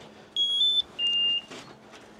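Electronic beeps from a handheld livestock EID tag reader held to a weanling's ear tag: first a two-note beep stepping slightly up in pitch, then, after a short gap, a single slightly lower beep, the signal of a tag being read.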